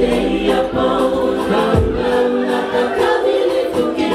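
Live Cook Islands song: several women singing together in harmony, holding long notes, over a band with a steady beat.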